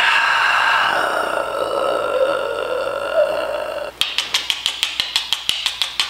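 A man's drawn-out wordless vocal reaction, slowly falling in pitch, for about four seconds. It is followed by a quick run of sharp clicks, about eight a second, over the last two seconds.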